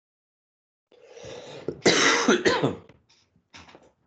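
A man coughing for about two seconds, starting about a second in, followed by a few faint clicks near the end.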